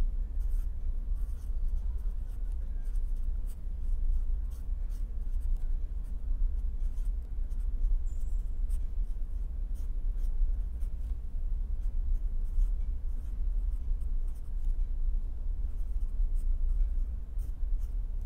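Marker pen writing on paper: a run of short strokes and small taps of the nib as figures are written. Under it is a steady low hum.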